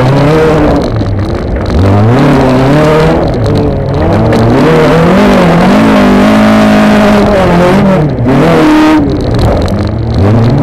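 Honda Civic autocross car's engine heard from inside its stripped cabin, revving up and falling back again and again as the driver accelerates, lifts and changes gear on a dirt track. It is held at steady high revs for about a second in the middle.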